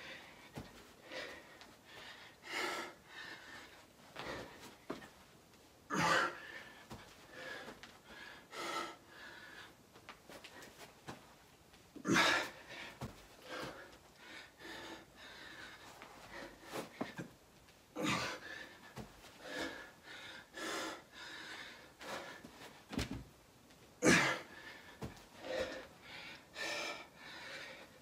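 A man breathing hard through back-to-back burpees, deep in a long, exhausting set. A louder burst comes about every six seconds, once per rep.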